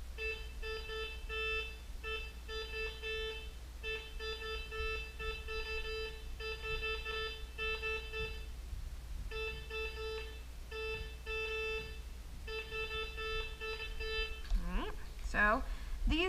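White's MX Sport metal detector sounding its target tone as the coil is swung over two quarters a few inches apart: one steady mid-pitched tone in repeated short runs with brief breaks. The detector gives multiple separate tones for the two close targets rather than one continuous sound.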